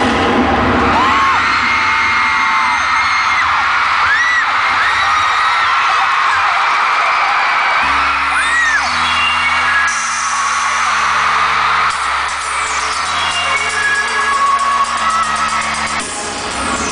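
Arena crowd screaming over loud concert music, with a low boom at the start as stage flame jets fire. About halfway through, a deep synth bass line starts, stepping between held notes.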